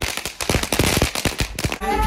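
Ground fountain firework spraying sparks with a dense, rapid crackle of small pops, cut off just before the end as music comes in.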